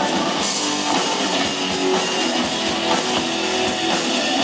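Live rock band playing an instrumental passage: electric guitar and bass over a drum kit keeping a steady beat.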